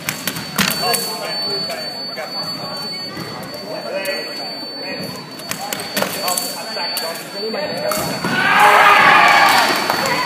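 Sabre fencers' feet thudding on the piste in a large hall, with several sharp knocks and voices in the background. A loud, drawn-out shout comes near the end.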